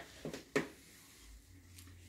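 Quiet handling of a bamboo-and-ripstop-nylon kite frame, with one short click about half a second in.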